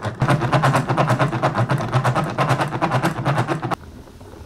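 Hand-cranked yarn ball winder turned fast, its mechanism giving a rapid, even clicking rattle as it winds yarn. The rattle stops abruptly near the end.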